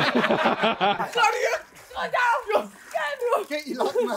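Men talking and laughing, with a rougher, noisier burst of laughter in the first second.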